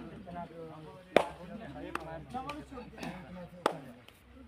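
Players' voices calling out during a kabaddi raid, broken by four sharp hand smacks: the first about a second in, the last near the end.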